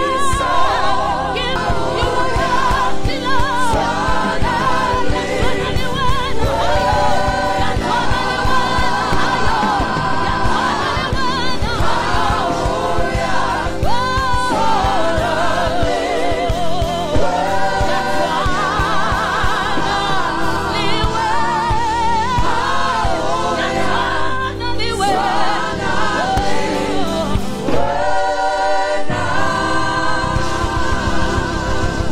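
Live gospel praise and worship: a group of singers on microphones sing with vibrato over a church band with drums and bass guitar. The bass drops out briefly near the end.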